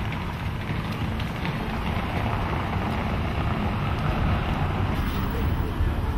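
Steady outdoor street ambience with wind rumbling on the microphone.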